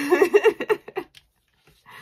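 A woman laughing: a high giggle of quick pulses lasting about a second, then a soft breathy exhale near the end.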